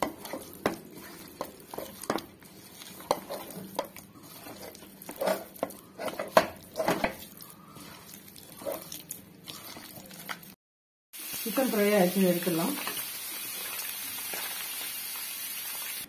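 Raw chicken being mixed by hand with masala in a steel bowl: irregular wet squelches and light clicks against the metal. After a sudden cut about ten and a half seconds in, hot oil sizzles steadily as battered chicken pieces deep-fry in a pan.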